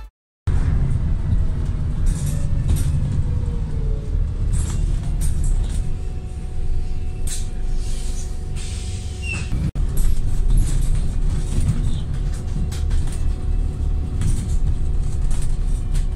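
Interior sound of a Volvo B5TL double-decker bus with its four-cylinder diesel running: a steady low rumble with rattles and knocks from the cabin fittings. A gliding tone sounds early, and a steady whine holds from about six seconds in.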